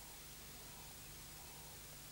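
Near silence: a faint, steady hiss with a low, steady hum underneath.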